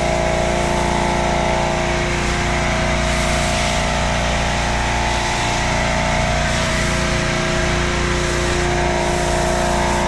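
Pressure washer running steadily while a foam cannon on its wand sprays soap with a constant hiss. The motor's pitch dips slightly a couple of times.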